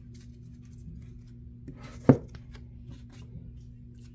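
A deck of UNO cards handled in the hands, with scattered light clicks of the cards and one sharp knock about two seconds in as the deck is set down on the tabletop. A steady low hum runs underneath.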